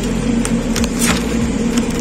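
Steady hum of a supermarket's refrigerated meat display case, with a few short crackles of plastic wrap as a pack of pork belly is taken off the shelf.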